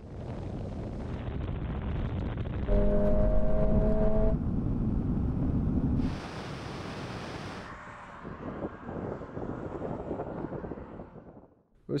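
Four-cylinder Toyota sports cars accelerating hard down a runway in a drag race. About three seconds in, a loud, steady engine note at high revs holds for a second and a half. Around six seconds a brief rushing hiss comes in, and then the sound fades away.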